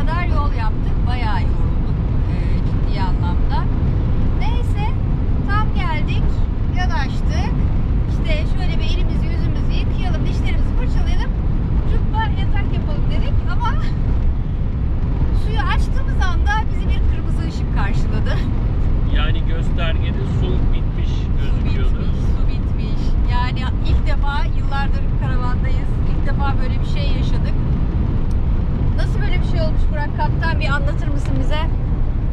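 Steady engine and road drone of a Fiat Ducato diesel camper van heard from inside its cab while driving at highway speed, under a woman talking.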